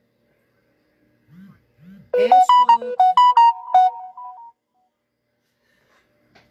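A short electronic jingle like a phone ringtone: a quick run of about ten clear notes starting about two seconds in and fading out after a couple of seconds.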